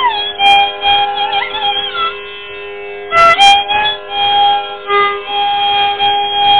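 Carnatic classical music in raga Purvikalyani: a melodic line holds and slides between notes over a steady tambura drone. A few mridangam and ghatam strokes sound, around a second in and again near the middle.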